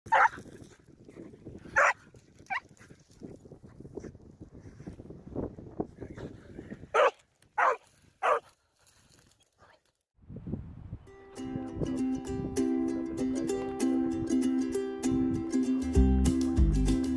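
A puppy barking at a rabbit held in a wire cage trap: six short, sharp barks in two groups of three. After a moment of silence, acoustic guitar music starts about eleven seconds in and carries on.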